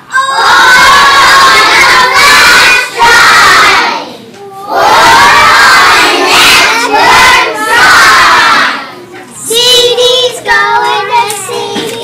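A group of young children shouting and cheering together in two loud stretches of about four seconds each, then quieter children's voices near the end.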